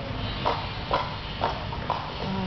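Plastic sport-stacking cups clacking against each other and the table: four sharp clacks about half a second apart.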